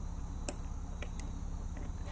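Craft knife cutting through the rubber housing of a USB-C to 3.5 mm audio adapter: one sharp click about half a second in, then two fainter ticks.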